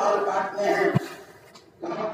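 A man's voice, drawn out and carried over a public address system, with a short low thump about a second in. It fades out briefly and comes back just before the end.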